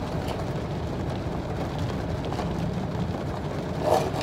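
Car engine idling, a steady low hum heard from inside the closed cabin.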